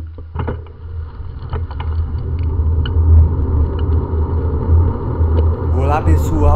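Low wind and road rumble on a bicycle-mounted camera's microphone as the bike rolls along an asphalt street, growing louder, with scattered light rattles and clicks from the bike.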